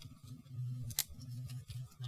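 A single sharp click of hard plastic parts about a second in, as a plastic model-kit gun is handled and pushed against a Gundam model's hand.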